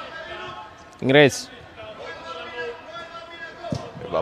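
A football being kicked and bouncing on artificial turf in a large, echoing indoor football hall, with one sharp kick near the end, under the faint calls of players.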